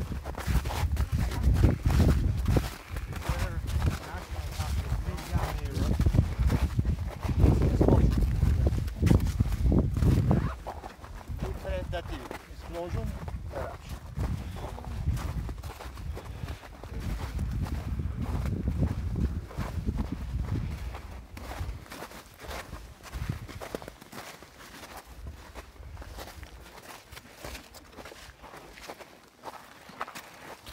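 Footsteps crunching and clattering over loose, blocky lava rubble. A heavy low rumble sits under the steps for the first ten seconds or so, then drops away.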